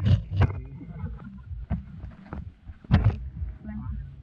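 Wind buffeting the camera's microphone in flight, a steady low rumble broken by several sharp loud gusts, the loudest about three seconds in.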